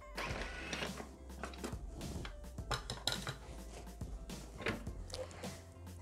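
Soft background music with scattered knocks and clinks of the Thermomix being handled: its lid unlocked and lifted off and the steel mixing bowl taken out.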